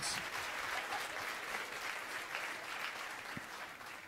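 Audience applauding, the clapping slowly dying away toward the end.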